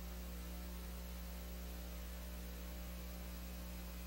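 Steady low electrical mains hum with a faint hiss over it, unchanging throughout: background noise on the audio track of a transferred VHS tape with no programme sound.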